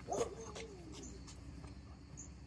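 Goldendoodle whining: a brief cry just after the start, trailing into a thin whine that falls in pitch over about a second.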